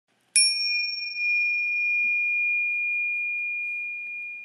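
A single bright bell-like chime struck once, its one high tone ringing on steadily and slowly fading.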